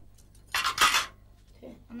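Cutlery and dishes clattering on a table as it is set: one brief burst of clinking about half a second in.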